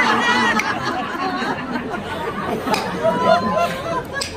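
Several women laughing and chattering together at a joke just sung in a comic carnival song.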